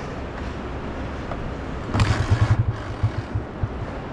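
A motor vehicle's low, steady rumble, with a sharp knock about two seconds in followed by uneven low thumping for a second or so.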